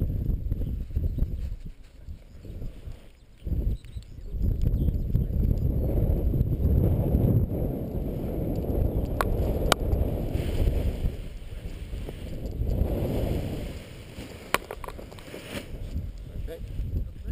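Wind buffeting a head-mounted camera's microphone in gusts that swell and fade, with a few sharp clicks.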